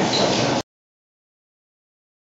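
Steady mechanical running noise of a potting machine and transplanter line. It cuts off abruptly about half a second in, leaving dead silence.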